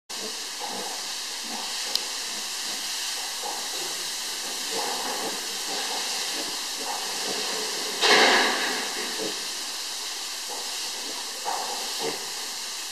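A piglet rooting and snuffling at a cloth, heard as scattered short soft sounds over a steady hiss, with one louder rushing burst about eight seconds in.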